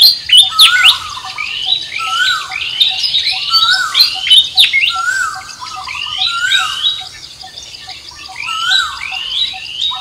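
Several birds calling over and over with short chirps that sweep up and down in pitch, overlapping one another, loudest in the first second or so. A faint, even ticking runs underneath.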